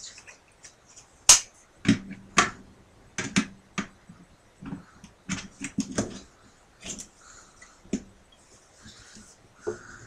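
Mini guitar amp being fitted onto the side of an acoustic-electric guitar: a scatter of irregular clicks and knocks of plastic against the guitar body, a few of them followed by a short low ring from the body.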